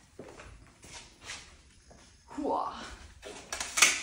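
Two heavy electric unicycles being wheeled by their trolley handles into place on a concrete floor: scattered scuffs and knocks, ending in a sharp clack shortly before the end.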